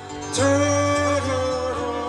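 Harmonica comes in about a third of a second in with a bright, steady held note over acoustic guitar, then steps down in pitch twice.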